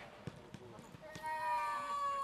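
A few soft thuds, then about halfway through a man's long, drawn-out shout on one high vowel starts, its pitch slowly falling.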